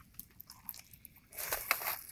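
A few faint clicks, then a plastic bag rustling and crinkling from a little past halfway, growing louder near the end.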